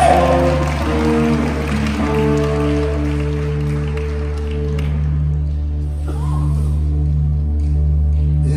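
Live band playing an instrumental passage: a steady bass line under long held chord notes, with audience applause fading out over the first few seconds.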